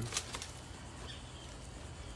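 Faint outdoor background with a few light clicks near the start, likely from handling the camera or the brush.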